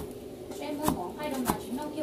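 Kitchen knife chopping through a bunch of green onions onto a cutting board: a few sharp knocks of the blade on the board, roughly one every half second.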